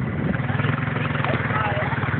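ATV engine idling with a steady low hum and a rapid even pulse.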